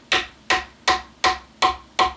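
Small hammer tapping a glued wooden dowel plug into a hole in a guitar body, six light, evenly spaced taps at about three a second, each with a short ring.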